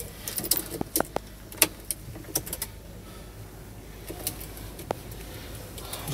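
Scattered sharp clicks and light taps of controls and keys being handled in a truck cab, over a low steady hum, with the engine not yet started. Most of the clicks fall in the first couple of seconds, with a few more later.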